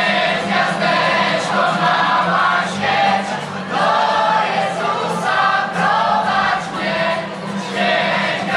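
A group of young men and women singing a Christmas carol together into microphones, loud and continuous.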